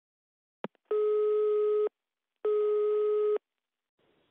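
A click on the phone line, then two steady telephone beeps about a second long each: the busy tone of a call that has just dropped.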